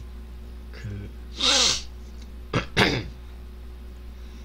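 A man's short non-speech vocal sounds: a sharp, breathy burst about a second and a half in, then two brief voiced bursts near the three-second mark.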